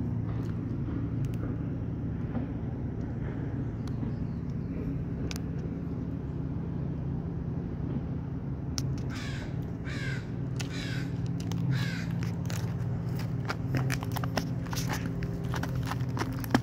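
A crow cawing, a run of about five caws starting about nine seconds in. Underneath are scattered crackling footsteps and twig snaps on forest litter and a steady low hum.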